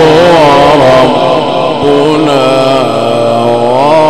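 A male Quran reciter's voice amplified through a microphone, drawing out one long ornamented melodic line in Egyptian tajwid style. The pitch winds in slow turns, steps down about a second in and climbs again near the end.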